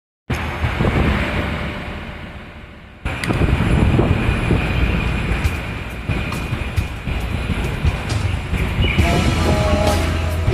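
Instrumental intro of a karaoke backing track for a pop ballad, under a heavy rumbling background noise. It fades down over the first few seconds, starts again abruptly about three seconds in, and melodic notes come in near the end.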